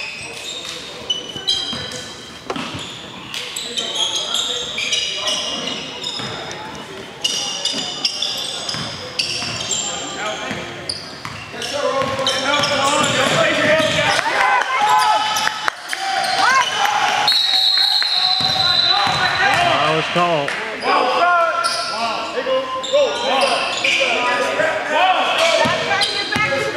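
Live basketball play on a hardwood gym court: a ball bouncing, sneakers squeaking and players calling out in an echoing hall. The voices grow louder about halfway through.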